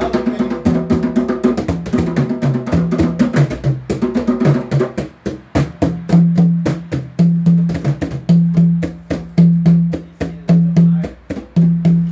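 Hand drums, a djembe among them, played together in a fast, steady rhythm of hand strikes, with a low pitched note sounding again and again under the strokes.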